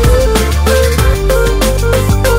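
Instrumental passage of a pop song with no singing: an electronic arrangement with a steady drum beat, deep bass and a stepping melody line.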